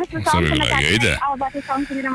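Human voices sliding up and down in pitch without clear words for about the first second, then a few short broken bits of talk.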